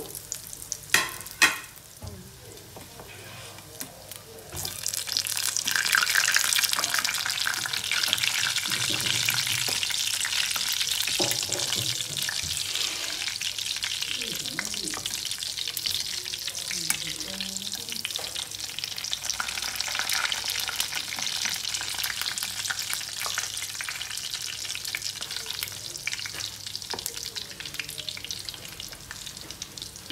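Breadcrumb-coated bread slices shallow-frying in hot oil in a pan, a steady fine sizzle and crackle. The sizzle is softer for the first few seconds, with a couple of sharp knocks about a second in, then grows louder about five seconds in and stays steady.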